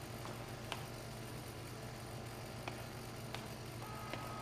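Quiet, steady low hum with a few faint, scattered clicks; a single steady high tone comes in near the end.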